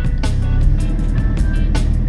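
Background music over the steady low running of the camper van's engine as it drives.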